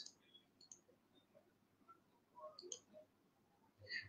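Near silence with a few faint clicks, one just under a second in and a small cluster near three seconds in.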